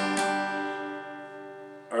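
Acoustic guitar's G major chord, strummed once at the start and left to ring, slowly fading out.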